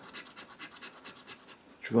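Rapid back-and-forth scraping of a small scratching tool over a lottery scratch ticket, rubbing off the coating over the symbols, about seven strokes a second; it stops about a second and a half in, just before a spoken word.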